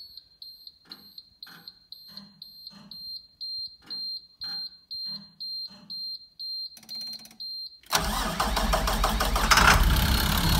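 School bus dashboard warning beeper sounding with the key on, a high steady beep repeating about three times a second. Near the end the starter cranks briefly and the bus engine catches and runs, showing the bus still starts with the interlock wiring removed.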